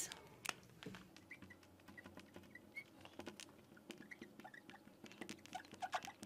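Faint squeaks and light taps of a marker writing on a glass lightboard: short, small chirps with scattered clicks.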